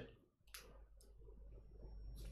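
Near silence in a small room, with a faint sharp click about half a second in and a second, fainter click about a second in.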